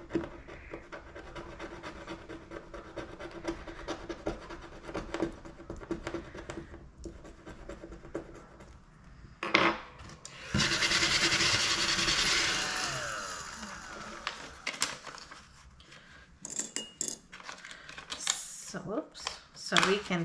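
A metal-tipped scratcher rubbing the silver coating off a scratch-off card on a wooden tabletop, in rapid fine strokes. About halfway there is a sharp click, then a louder rushing noise that fades away over a few seconds, followed by scattered light handling clicks.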